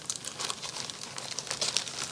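Crinkling of a cross-stitch kit's packaging being handled: a run of quick, irregular crackles.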